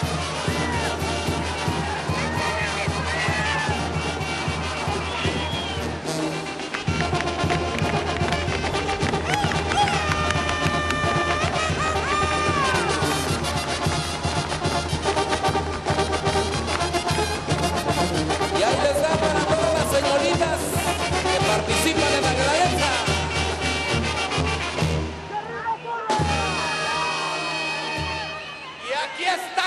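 Brass band playing a chilena with a steady beat, with some voices or shouts over it; the music drops away near the end.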